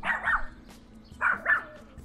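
A dog barking a few short barks: one at the start, then two in quick succession a little after a second in.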